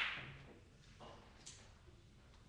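Three-cushion billiards: the sharp click of the cue striking the ball fades out at the start. Then two lighter clicks of the balls in play come about a second and a second and a half in.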